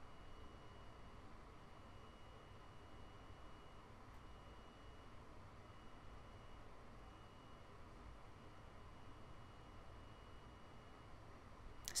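Near silence: faint steady room-tone hiss, with a faint high whine that drops out and returns every second or so.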